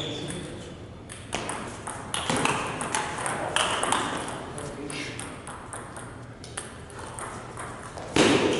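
Table tennis rally: the ball clicks off the rackets and bounces on the table, a sharp click every half second or so, stopping near the end.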